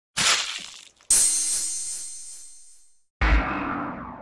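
Three sudden impact sound effects, each fading away: a short crack, then a brighter crash with a high ringing shimmer that dies out over about two seconds, then a deep boom about three seconds in.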